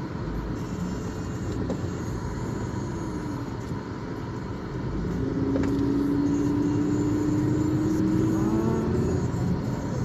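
Car engine and road rumble heard from inside the cabin as the car moves along. About five seconds in, the engine note grows louder and rises slowly in pitch for several seconds as the car picks up speed.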